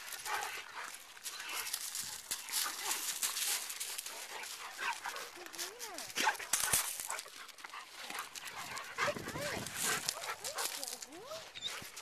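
A Cane Corso whining faintly a few times in short rising-and-falling whines, over steady scuffing and crunching on gravel and grass.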